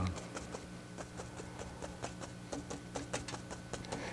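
Stiff paint brush tapping oil paint onto a canvas in quick, light, irregular taps, several a second, as small bushes are dabbed in.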